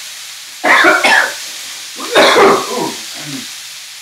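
A man coughs loudly twice over a pan of stir-fry, the second fit longer than the first, while the pan sizzles steadily on high heat.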